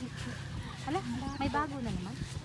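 People's voices talking indistinctly, over a low steady hum.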